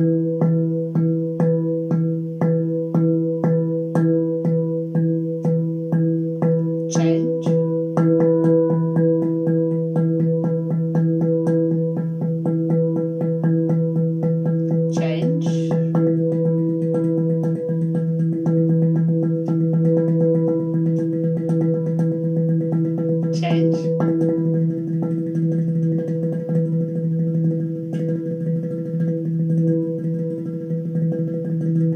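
Handpan struck with the index fingers, alternating single strokes on one note. It goes at about two strokes a second for the first eight seconds, then speeds up until the note rings almost continuously.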